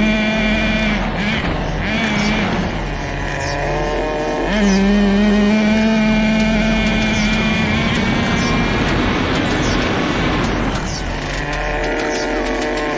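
Small glow-fuel nitro engine of a Tamiya TNS-B RC truck running at high revs under varying throttle. It eases off about a second in, revs back up sharply about four and a half seconds in, and eases off again near the end. The engine is still being broken in and is not yet tuned.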